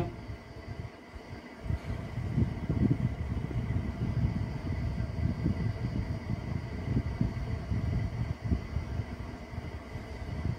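A low, uneven rumble of background noise, with a faint steady high tone above it.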